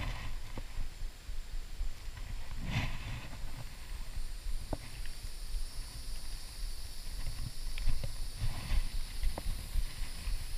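Low rumble of handling and movement on the action camera's microphone, with a few faint clicks and a short breath-like sound about three seconds in.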